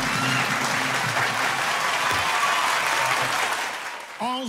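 Studio audience applauding as a live song ends, the clapping steady and then fading away near the end.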